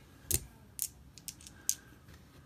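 Light clicks and taps of small hard objects handled on a tabletop: a single louder knock about a third of a second in, then several short, sharp clicks.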